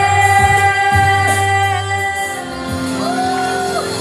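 A woman singing a pop song live into a microphone over loud amplified backing music, holding one long note for the first two seconds before starting a new phrase near the end.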